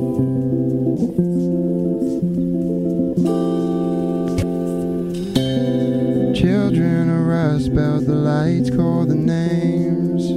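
Live band playing electric guitar and bass guitar with steady held chords. About six seconds in, a wavering, bending melodic line comes in over them.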